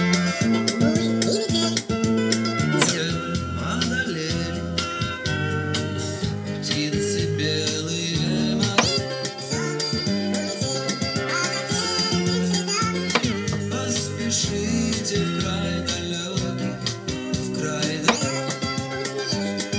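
Music playing back from a cassette in a Panasonic RX-CT890 boombox through its loudspeakers, while the tape is being dubbed from one deck to the other.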